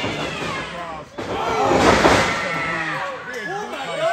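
Live wrestling crowd shouting, with a sudden loud crash about a second in as a wrestler hits the ring mat, and the shouting swells right after.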